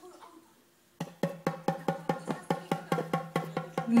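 Small rope-tuned djembe with a wooden shell and skin head, struck quickly by hand in an even run of about six beats a second. The run starts about a second in, and each beat has a short low ring.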